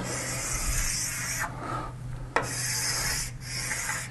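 Scratchy rubbing strokes of a pen or chalk writing on a surface, in several strokes with short breaks between them, over a steady low mains hum.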